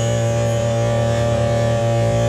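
Coocheer 58cc two-stroke brush cutter engine running at high speed with a steady, unchanging pitch as it cuts weeds.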